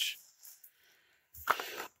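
Near silence, then a brief soft rustle and tap about a second and a half in as a small cardboard trading-card box is picked up off the table.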